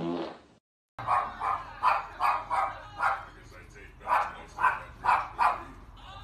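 Small dog barking repeatedly: about ten short, sharp barks in two runs with a brief pause in the middle.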